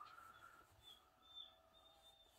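An American Staffordshire terrier whining faintly from behind a closed door: a few thin, drawn-out, high-pitched whines, the highest about a second in.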